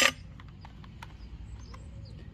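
A few faint light clicks of a small plastic cap being taken off a cordless pressure washer's water inlet by hand, over a low steady outdoor background.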